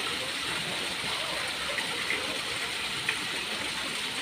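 Water from a small rock-garden fountain falling steadily into a shallow pool, with a sharp click about three seconds in.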